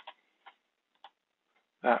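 Two light clicks from the computer being worked, about half a second apart, in a pause between spoken words.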